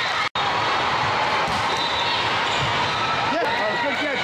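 Volleyball hall din: crowd chatter and players' voices over the thuds of volleyballs being hit and bouncing. The sound drops out for an instant just after the start, and several voices call out together near the end.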